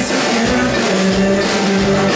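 Live rock band playing loud without vocals: acoustic guitar over a drum kit, with a long held low note through the second half.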